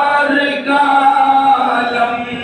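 A man's voice chanting a devotional naat melody, holding long drawn-out notes with a short break about half a second in.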